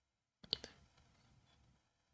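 Two or three short, faint clicks close together about half a second in, otherwise near silence.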